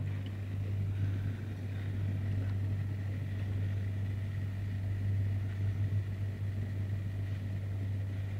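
A steady low mechanical hum with an even background hiss and a faint thin high tone, unchanging throughout.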